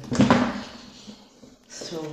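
A person getting up from a seat: a short voiced grunt mixed with a bump and rustle of movement just after the start, fading within about a second. Speech starts again near the end.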